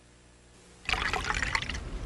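Near silence, then about a second in a sudden, irregular splashing noise like running or trickling water starts and carries on.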